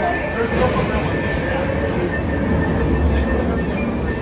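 Dark-ride ambience inside a boat attraction: a steady low rumble with a thin held tone and faint voices over it.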